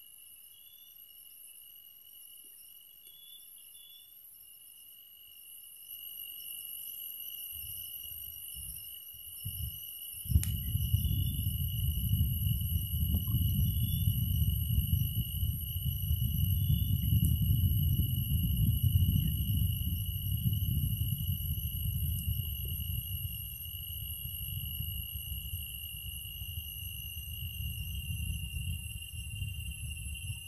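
Steady high-pitched insect chorus, such as cicadas or crickets, ringing on; from about ten seconds in, a louder low rumble joins and stays as the loudest sound.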